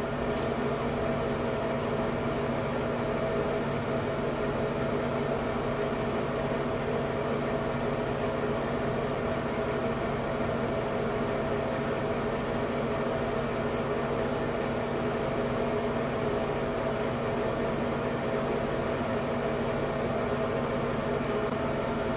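Bathroom ceiling light-and-fan combo unit running: a steady hum with several held tones over an even rush of air.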